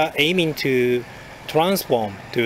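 Only speech: a man talking in short phrases, with a brief pause about a second in.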